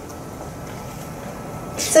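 Steady room noise in a lecture hall, a low even hiss with a faint thin hum, until a woman's voice starts speaking near the end.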